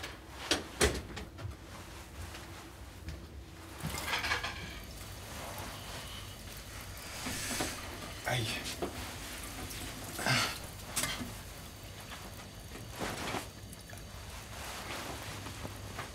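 Dishwashing at a kitchen sink: water splashing and dishes clinking in short bursts every few seconds, after a few sharp knocks about a second in.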